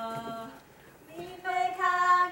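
Female voices singing unaccompanied: a held note ends about half a second in, a short pause follows, then the next phrase begins, louder.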